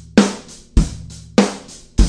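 Snare drum damped by two floppy disks gaffer-taped to its hoop, struck with sticks three times about six-tenths of a second apart, with another hit right at the end. Each hit is a sharp crack whose ring is cut short: a slightly muffled, gated snare sound with a lot of attack.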